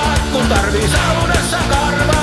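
Rock band playing an instrumental passage: a lead line that bends and wavers in pitch over steady bass and drums.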